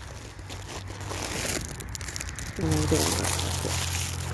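Crinkling, rustling noise close to the microphone, louder for a moment about one and a half seconds in. A brief murmur of a woman's voice and a steady low hum follow near the end.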